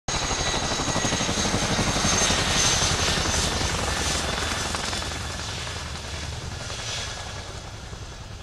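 Boeing CH-47 Chinook HC.2 tandem-rotor helicopter flying low past: rapid chop of its two rotors with a high, steady whine from its twin turboshaft engines. It is loudest about two to three seconds in, then slowly fades as it moves away.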